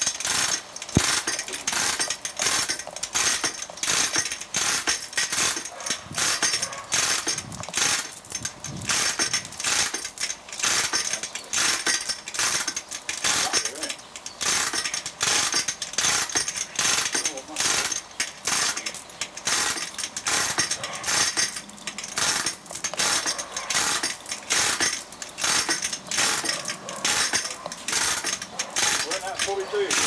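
A ratchet mechanism worked in quick, even strokes, sharp clicks at about three a second, going on steadily while the engine is fitted into the car.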